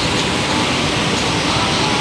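Loud, steady rushing noise with no clear pitch or rhythm, starting abruptly, as in open-air ambience on a phone microphone.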